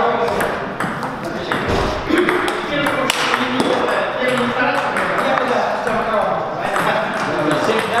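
Table tennis balls clicking off bats and tables in a quick, irregular patter of strikes. More than one rally is going on at once.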